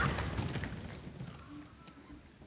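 A large group of performers dropping to a wooden stage floor together: a dense clatter of thuds and shuffling that dies away over about a second and a half.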